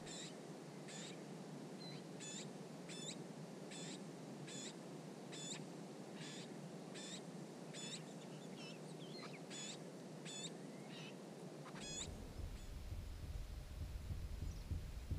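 Garden warblers at a nest with nestlings: faint, short high-pitched calls repeated about once a second, stopping about twelve seconds in.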